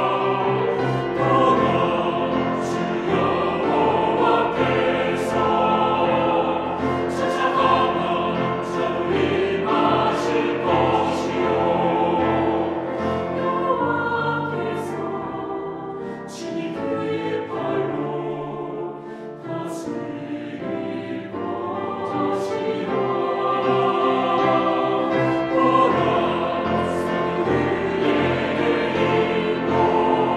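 Mixed choir singing a Korean sacred anthem with instrumental accompaniment, in loud accented chords. It grows softer for several seconds past the middle, then builds again.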